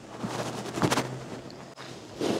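Knocks about a second in as a CCS charging connector fitted with Tesla's CCS adapter is pushed into a Tesla's charge port, mixed with the rustle of the microphone being brushed, over a steady low hum.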